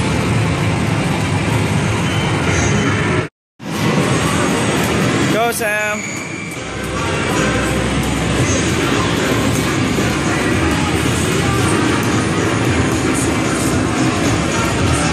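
Loud music and background voices filling an amusement arcade, with a brief rising electronic tone about five and a half seconds in. The sound cuts out completely for a moment about three seconds in.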